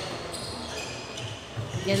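A basketball being dribbled on a hardwood gym floor, a few dull bounces under the hall's background noise.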